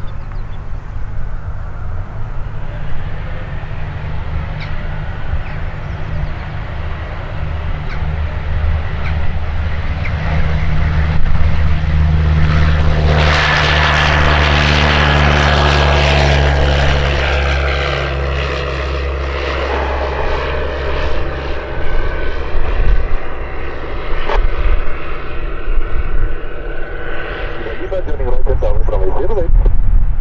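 Tecnam P2002-JF light aircraft's Rotax 912 four-cylinder engine and propeller at full power on the takeoff run and climb-out. The drone grows loudest about halfway through as it passes, then drops in pitch and fades.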